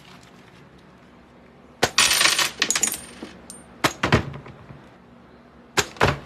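Plastic computer keyboard slammed down on a desk: a loud crash with rattling clatter about two seconds in, then a few more sharp knocks.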